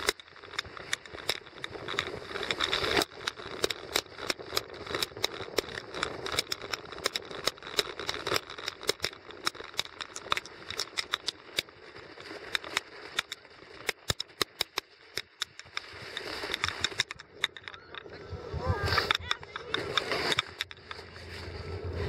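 Snow tube sliding down a packed, bumpy snow slope: a steady hiss of sliding with rapid, irregular clicks and knocks as it jolts over the bumps, thinning out near the end as it slows.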